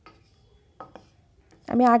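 Wooden spatula knocking and scraping lightly against a karahi (wok) a few times as it pushes lumps of solid ghee around the hot pan. A woman's voice begins near the end.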